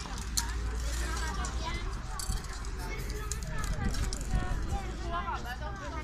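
Several people chatting in the background, with short hisses from an aerosol spray-paint can: a brief burst near the start and a longer one about two seconds in.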